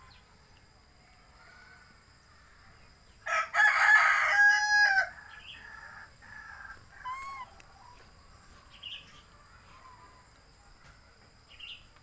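A rooster crows once, a single crow of about two seconds starting a little over three seconds in.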